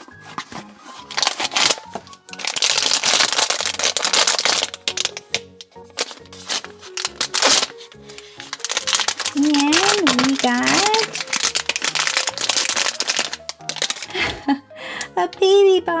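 Foil blind-bag packet and cardboard box crinkling and tearing as they are handled and opened, in two long rustling stretches, over background music.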